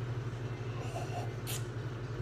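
Steady low background hum in a quiet room, with a faint short tick about one and a half seconds in.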